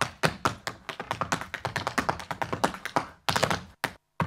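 Flamenco footwork (zapateado): a fast, uneven run of sharp heel and toe taps, several a second, breaking off briefly near the end.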